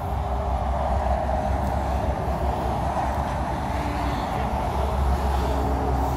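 Steady vehicle noise: a low rumble with a hiss over it, running on without a break.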